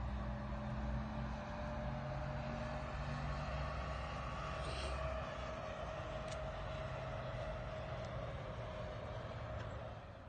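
Steady low drone of a distant engine, with a few held tones; its deepest part fades out about halfway through.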